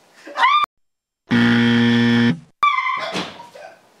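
A game-show style buzzer sounds once for about a second, a flat, steady buzz that starts and stops abruptly, set between stretches of dead silence. Short vocal exclamations come before and after it.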